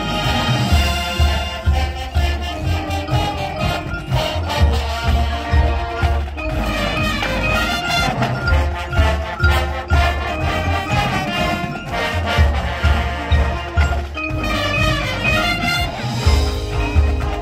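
College marching band playing a rock number: brass and woodwinds over a steady drum beat with front-ensemble percussion.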